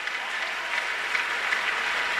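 A large congregation applauding, the clapping swelling up and then holding steady.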